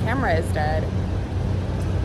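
A woman's voice for the first second or so, over a steady low rumble of street traffic.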